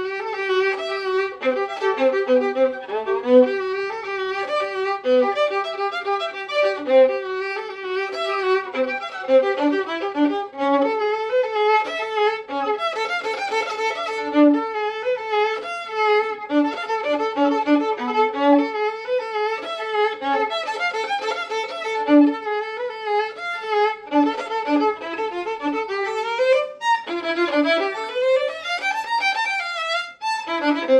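Solo acoustic violin playing a fast passage of quick running notes. From about a third of the way in, a held repeated note sounds against the moving line, and rising scale runs come near the end.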